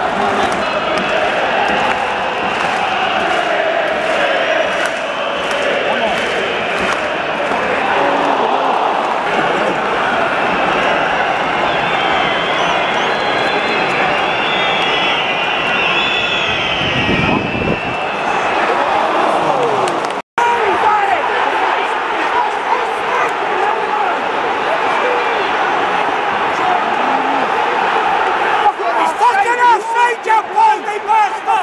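Stadium football crowd: a dense mass of supporters' voices chanting and singing without a break. The sound cuts out completely for an instant about two-thirds of the way through, then the crowd noise carries on.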